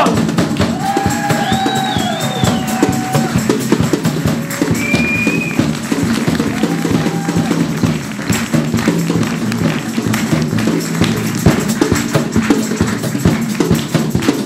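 Live band playing: drum kit and tambourine keeping a busy, steady beat, with a few short sliding tones over it in the first half.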